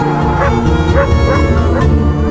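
Background music with held low tones, with short yelping calls over it about every half second.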